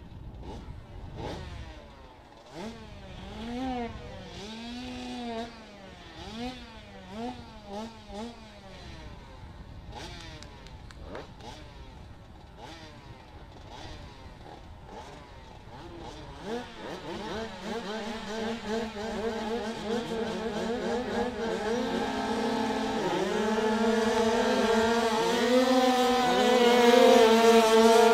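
Several 85cc speedway motorcycles at the starting tape, their riders blipping the throttles in short rising-and-falling revs for the first several seconds. From about halfway the engines are held at high revs and the bikes get away, the noise building steadily louder toward the end.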